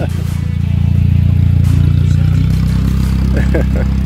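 Low, steady engine drone of vehicles driving along the beach, heard from inside a car's cabin; it grows a little louder about a second in.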